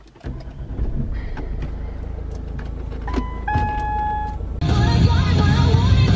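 Car engine running in the cabin, a low steady rumble, with a few clicks of dashboard buttons in the first second and a half and short electronic beeps about three to four seconds in. Music comes in near the end.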